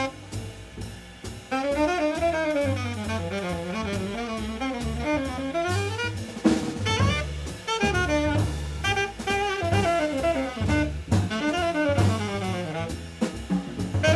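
Live jazz on saxophone, double bass and drum kit: the saxophone plays a winding melodic solo line over bass notes and cymbal-led drumming. The saxophone line drops back briefly at first and comes in fully about a second and a half in.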